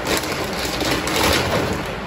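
Plastic bags and packaging rustling and crinkling as items are dug out of a bag.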